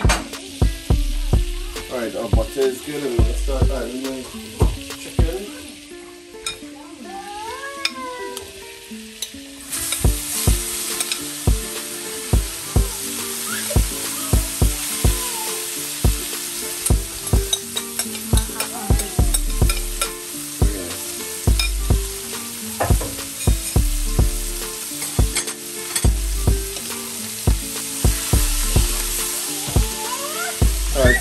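Chicken pieces sizzling in hot olive oil and butter in a nonstick wok, with a spoon knocking and scraping the pan as they are stirred. The hiss of the frying starts suddenly about a third of the way in. Quiet background music runs underneath.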